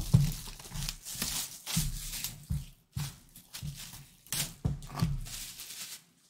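Plastic shrink-wrap being torn and pulled off a sealed cardboard trading-card box, crinkling and rustling in a run of irregular tears.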